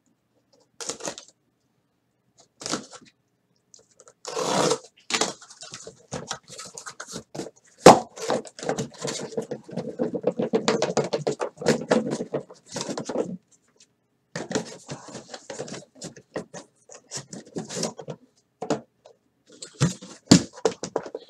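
A cardboard shipping case being opened by hand: tape torn, flaps scraping and folded back, and the sealed card boxes inside slid out and set down. It comes as scattered clicks and knocks, a sharp knock about eight seconds in, and then several seconds of dense cardboard rustling and scraping.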